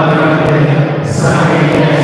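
Sung liturgical chant over a steady held low note, the voices moving slowly between long sustained pitches.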